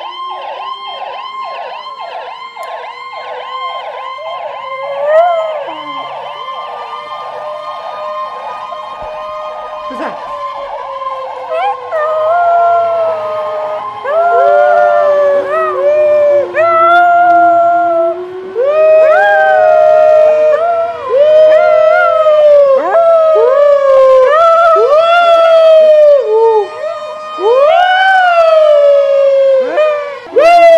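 Ambulance siren from a played video, first in a fast yelp, then a slow rising-and-falling wail. From about twelve seconds in, loud howling joins in over the siren, in repeated swooping howls.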